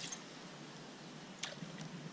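Faint, steady outdoor hiss with a single sharp click about one and a half seconds in.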